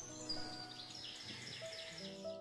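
Soft classical guitar music, with birds chirping busily over it.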